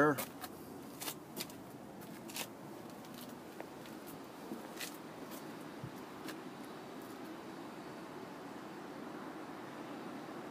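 Quiet outdoor background hum, steady and low, with a scattering of light clicks and taps.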